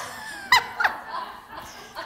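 A woman laughing: a few short, high laughs in the first second, then dying down.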